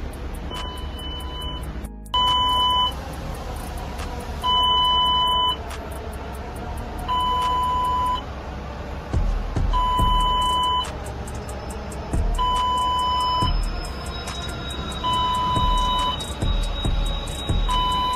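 Electronic warning beeper sounding a steady high tone for about a second, repeating about every two and a half seconds over a constant background hum. There are a few dull low thumps in the second half.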